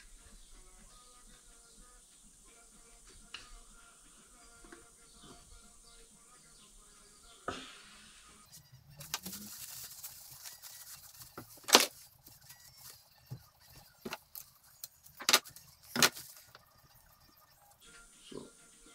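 Faint background music at first. About halfway in, a paper towel rubs over the top of a motorcycle fork leg for a couple of seconds. Then come a few sharp clicks from the fork's damper rod, nut and parts being handled, the loudest about two-thirds of the way in.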